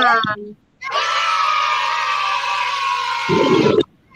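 A recorded sound effect of children cheering, played from the slide: a held, steady cheer of many voices lasting about three seconds, cutting off abruptly just before the end. A brief spoken word comes just before it.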